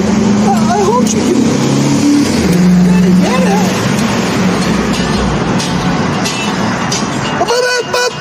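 A motor vehicle on the street running past, a steady low engine drone that grows heavier in the middle and then fades. Near the end, music with singing starts.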